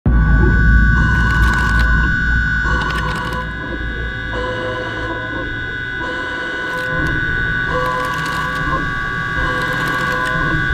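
CNC mill cutting a cast iron part with a coated tool: a steady high whine held throughout over a low rumble that is strongest in the first few seconds.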